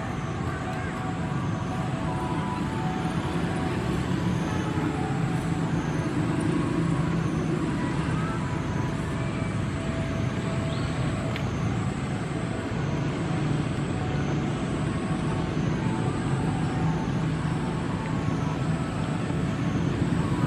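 Steady outdoor background rumble, with a thin high continuous tone over it that dips in level every second or two.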